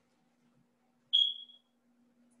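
A single short, high-pitched ping about a second in, fading away within half a second, over a faint steady hum in an otherwise near-silent pause.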